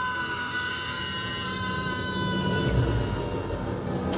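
A woman's long, high scream from a TV drama, played through computer speakers, held on one pitch that sags slightly for about three seconds over a low rumbling score.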